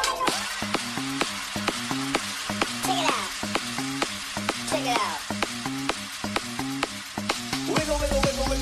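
Deep house music in a breakdown: the kick drum drops out, leaving a repeating bass riff, fast ticking percussion and a hissing noise layer with a couple of falling sweeps. The kick returns at the end.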